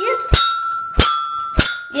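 Dash robot's toy xylophone accessory being played by the robot's mallet: three sharp strikes on the bars about 0.6 s apart, each note ringing on after the hit, really loud.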